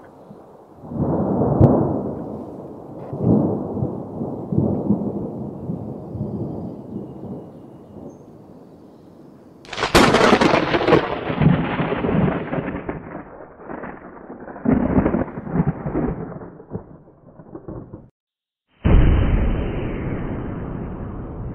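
Wind buffeting a phone microphone in gusts, a rumbling noise that swells and fades. It breaks off for a moment near the end and comes back.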